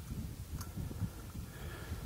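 Low, uneven rumble of wind on the microphone, with a few faint light clicks as the stove and propane bottle are handled.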